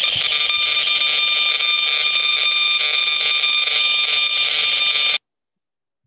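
Handheld RF meter's speaker turning the radio signals of a cell tower into sound: a loud, steady high-pitched whine of several tones over a harsh hiss, cutting off suddenly about five seconds in.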